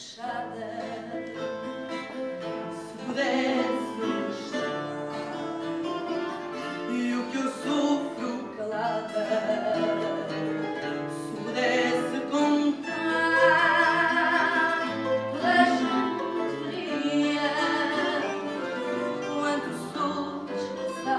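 Fado sung live by a woman with a wavering, sustained voice, accompanied by plucked guitars; the singing swells louder a few seconds in and again about two-thirds of the way through.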